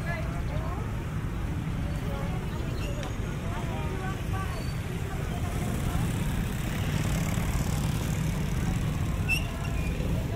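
Busy street-market ambience: scattered chatter of passers-by over a steady low rumble of motor traffic, the traffic growing a little louder in the second half.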